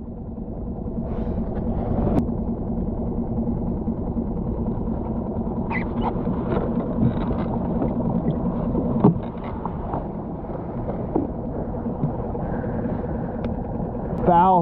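Small skiff's outboard motor running steadily at idle, a constant low rumbling hum. A few short knocks of handling on the boat, the sharpest about nine seconds in.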